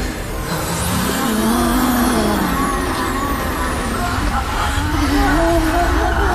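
Dramatic soundtrack of an animated fantasy scene: a steady low rumble under wavering, voice-like tones that slide up and down, with several high falling whooshes in the first few seconds.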